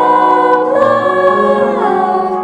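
A choir singing slowly, holding long notes in harmony, with the voices sliding down together near the end.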